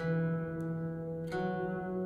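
Bavarian zither being plucked in a slow improvisation: a note is struck at the start and another about a second and a half in, both left ringing on.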